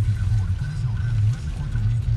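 Steady low rumble of a car's engine and cabin as the car idles in stopped traffic, heard from inside.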